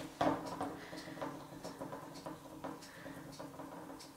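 Faint, irregular light taps and clicks of gloved fingers dabbing at wet paint on a canvas, over a low steady hum.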